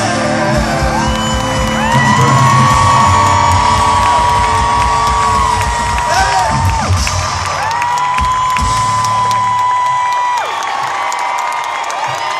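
Live country band playing out the final bars of a song while the crowd whoops and yells; the band stops about ten seconds in, leaving crowd cheering.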